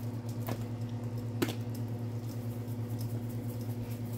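A pot of soup simmering on the stove while seasoning is shaken in: soft scattered ticks and two sharper clicks, about half a second and a second and a half in, over a steady low hum.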